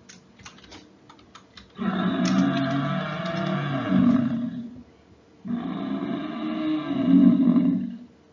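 African buffalo calling: two long, low calls of about three seconds each, the second starting about five and a half seconds in, after a few faint clicks.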